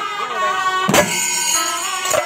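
Pandi melam temple percussion ensemble: kuzhal reed pipes play a wavering, nasal high melody over chenda drums. A loud stroke of drums and ilathalam cymbals lands about a second in, part of a beat that repeats a little over once a second.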